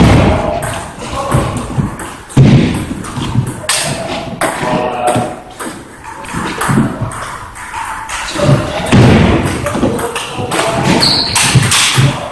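Table tennis rally: sharp, irregular clicks of the celluloid ball off the bats and table, with thuds of the players' footwork on the floor.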